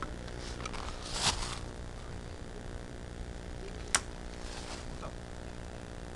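Brief rustling of clothing and gear as a player moves inside a small plywood hut, loudest about a second in, with one sharp click just before the middle.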